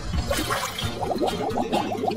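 Water being disturbed as a silicone pop-it toy is pushed under in a tank of water, then, about a second in, a rapid run of short bubbling gurgles, about ten a second, as air escapes from the submerged toy.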